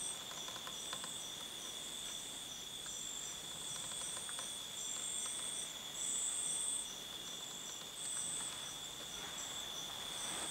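Insect chorus: one steady high trill runs throughout, and several still higher chirping calls swell and fade over it.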